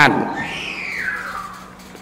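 A man's voice ends a word at the start, then a faint tone falls smoothly in pitch for about a second over a low steady hum.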